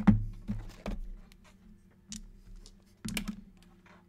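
Cardboard trading-card boxes knocked and slid as one is handled off a stack: a few sharp knocks in the first second. About three seconds in comes a quick cluster of clicks as two dice are rolled onto the table.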